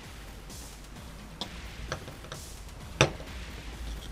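Small metal clicks of pliers gripping and bending a chain link closed, about four clicks with the sharpest about three seconds in. Faint background music runs underneath.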